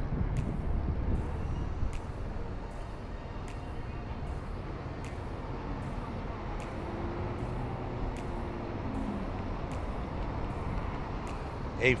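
Steady outdoor traffic noise, a low rumble of road vehicles, with a faint passing wavering tone partway through.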